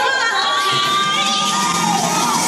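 Children shouting and cheering, one high voice held for over a second, with music underneath.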